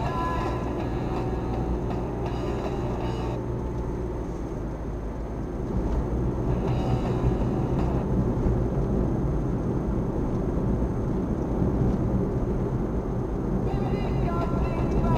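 Steady road and engine rumble inside a moving car's cabin, growing louder about six seconds in. Faint music from the car radio plays over it in the first few seconds and again briefly in the middle.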